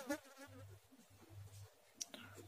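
Faint ballpoint pen writing on paper, with a faint low buzz coming and going.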